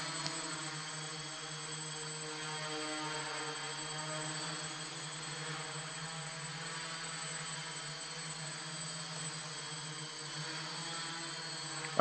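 Small electric quadcopter's motors and propellers buzzing steadily in flight, with slight shifts in pitch as it manoeuvres.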